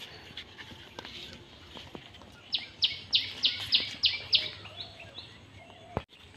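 A bird calling: a quick run of about seven sharp, high, falling notes, roughly three a second, then two fainter ones.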